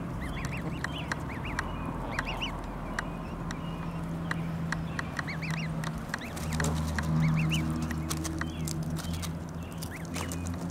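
Canada goose goslings peeping, high short notes in quick clusters, with small sharp clicks as the geese pluck grass. A low steady hum comes in about two-thirds of the way through.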